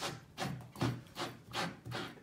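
A wine bottle's cork squeaks and rubs against the glass neck as a two-handled corkscrew works at it, in repeated rasping strokes about two or three a second. The cork is very old and stuck.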